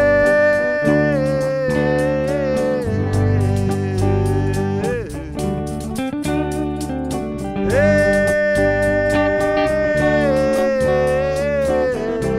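A live band playing an instrumental intro: an electric guitar holds long lead notes that bend and slide in pitch, over bass guitar and a steady tambourine beat. The lead line drops away about five seconds in and comes back in at about eight seconds.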